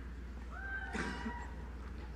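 A brief, faint, high-pitched whoop or cheer from someone in the hall, starting about half a second in and lasting under a second, over a low steady hum.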